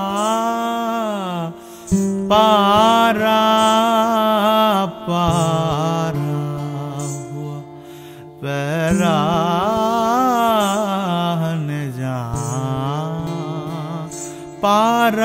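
Male voice singing an Urdu ghazal in long, ornamented held notes over acoustic guitar accompaniment. The singing breaks off briefly twice, about a second and a half in and again around the middle.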